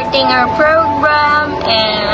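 Singing with musical accompaniment, one voice holding and sliding between notes, played through a laptop's speakers from an online ceremony broadcast.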